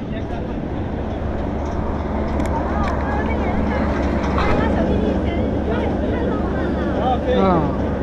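Steady low rumble of open-air ambience, with people's voices talking over it from about three seconds in.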